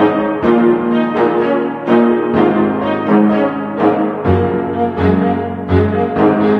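Instrumental background music, with struck notes coming in a steady pulse about twice a second.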